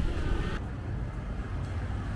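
Street traffic noise: a steady low rumble of passing road vehicles, with a faint higher hum that cuts out about half a second in.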